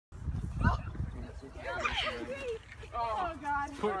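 Several young people and adults talking and calling out over one another in the middle of a game, with a low rumble of wind on the microphone.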